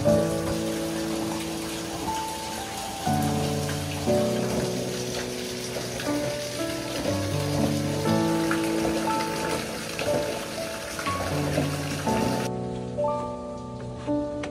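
Background music of sustained notes that change about once a second, over a steady hiss of hot-spring water running into an open-air bath. The water hiss cuts off near the end, leaving only the music.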